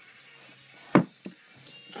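A single hard thump about a second in, followed by a lighter knock and a small click, as a paperback manga volume is pulled out from a tightly packed bookshelf.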